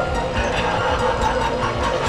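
Animated tombstone-lifter prop's motor-driven lid rattling and knocking in a steady clatter, under background music with long held notes.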